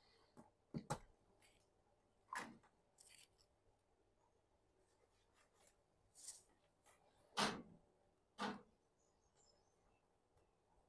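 Hand wire strippers cutting and pulling insulation off green solid-copper ground wires: about five short, sharp snips, two close together about a second in and the loudest late on, with faint rustling of the wires between.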